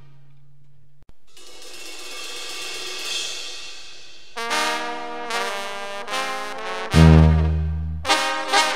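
Sinaloan banda music, a brass band with tuba, trumpets and trombones: a held low tuba note ends, and after a break about a second in a soft swell builds. Brass chords then come in as short stabs just past the middle, followed by a loud full chord with the tuba near the end.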